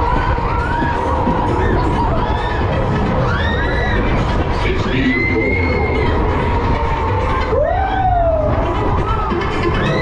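Riders on a spinning fairground ride shouting and screaming in short rising-and-falling whoops, over loud fairground music. A steady low rumble runs underneath, wind on the onboard camera.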